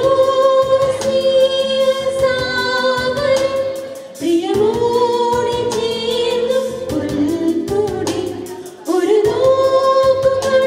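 Two women singing a duet into handheld microphones, in phrases of long held notes; each phrase breaks off briefly, about four seconds in and again near the end, before the next rises into its first note.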